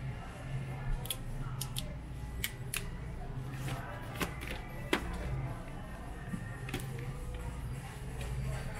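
Plastic detergent bottles and pod tubs clicking and knocking as they are handled on a store shelf, several separate sharp taps, over the store's background music.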